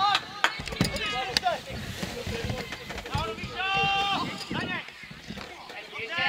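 Footballers shouting to each other on an open pitch, with one long held call about two-thirds of the way in. A few short sharp knocks are heard in the first second and a half.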